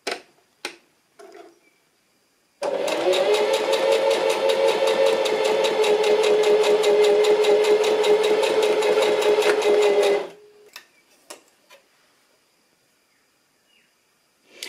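A few clicks as the stitch-length dial of a Singer Heavy Duty 4423 sewing machine is turned. Then the machine's motor spins up and it stitches steadily for about seven seconds with fast, even needle strokes before stopping, a test seam at the longer stitch length. A few light clicks follow.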